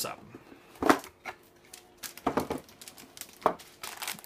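Cardboard lid being taken off a plastic model kit box, and the plastic bags of parts inside rustling under the hands: a few short scrapes and crinkles.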